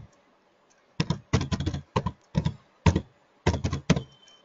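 Typing on a computer keyboard: an uneven run of keystrokes that starts about a second in.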